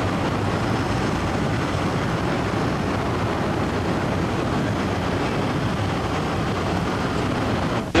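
Steady rushing roar of natural gas escaping under pressure from a ruptured gas main, one even noise with no breaks.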